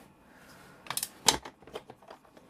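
Nanuk 905 hard plastic case being handled on a countertop: a handful of sharp clicks and knocks, starting about a second in.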